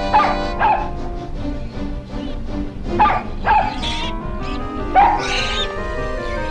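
Cartoon puppy yelping: short, high, falling yips, several of them singly and in quick pairs, over background music.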